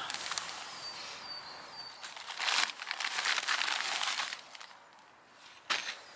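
Crinkly rustling for about two seconds in the middle, after a brief thin, steady high whistle.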